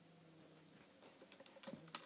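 Near silence: room tone, with a few faint small clicks in the last half second.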